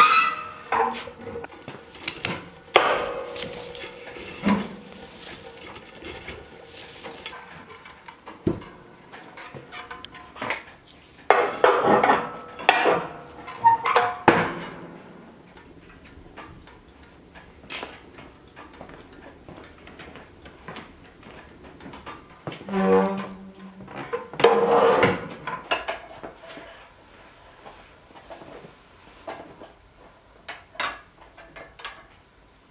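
Metal clanking and scraping in several separate bursts as a wood stove door is worked by its coil-spring handle and steel rod stock is handled at the fire for forging.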